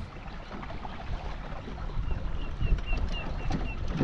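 Low, steady outdoor rumble of wind and lapping water. In the second half a bird gives a quick run of about seven short high notes, each slightly falling, about four a second.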